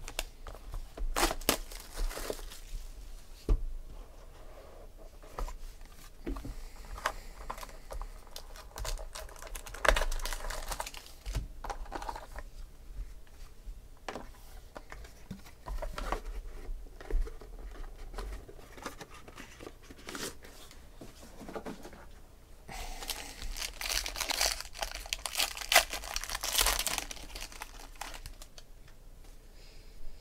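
A box of trading cards and its foil pack being opened by hand: crinkling and tearing of wrapping, with scattered clicks and taps of cardboard. The longest run of crinkling comes about three-quarters of the way through.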